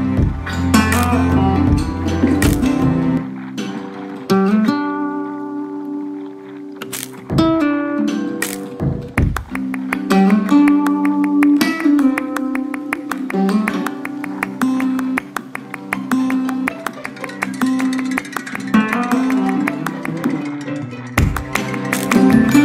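Background music of flamenco-style acoustic guitar, with fast strumming and plucked notes and a quieter passage of held notes about four seconds in.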